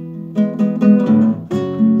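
Nylon-string classical guitar playing between sung lines: a chord left ringing, then a quick run of strummed notes about half a second in and another strum near the end.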